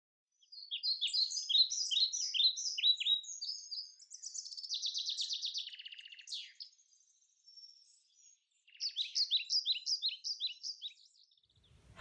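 A songbird singing: a run of quick chirping notes that runs into a rapid trill, a pause of about two seconds, then a second run of chirps near the end.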